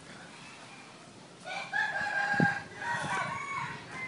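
A junglefowl rooster crowing once, a call of a little over two seconds starting about a second and a half in.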